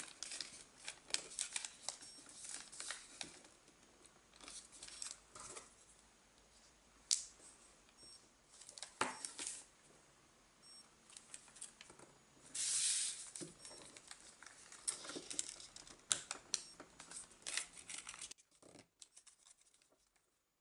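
A sheet of origami paper being folded and creased by hand: faint, scattered rustles, crinkles and light taps, with one longer swish about two-thirds of the way through. The sound stops near the end.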